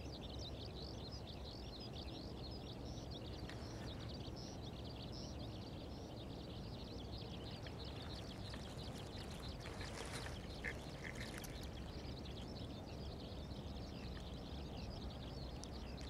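A dense, continuous chorus of short, high chirping calls from many small animals, with a few brief louder calls about two-thirds of the way in, over a low outdoor rumble.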